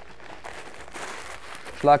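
Packing paper rustling and crinkling softly as it is wrapped by hand around a glass vase.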